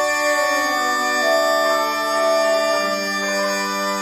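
Bagpipe music: a melody played over steady drones, as a background track.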